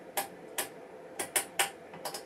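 About five sharp clicks at uneven intervals, the detents and buttons of a Rigol DS4014 digital oscilloscope's controls as its timebase is turned down.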